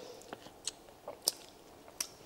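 A person quietly chewing a bite of dill pickle soaked in chamoy, with about four soft, short crunches in the first second and a half.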